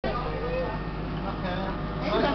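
City street ambience: a steady low rumble of traffic with faint voices of passers-by.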